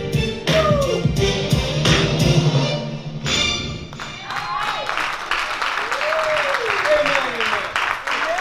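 Live church music with a bass line and singing, which fades about three seconds in. From about four seconds a congregation claps and calls out, with a voice rising and falling over the applause.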